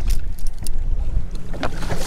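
Wind buffeting the camera microphone in an irregular low rumble, with a few light clicks.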